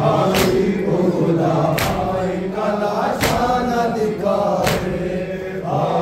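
A group of men chanting a Shia noha (mourning lament) in unison. Every one and a half seconds or so comes a sharp, loud unison slap of hands on chests (matam), four times.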